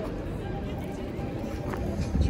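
Indistinct voices of people talking in a busy open square over a steady low rumble.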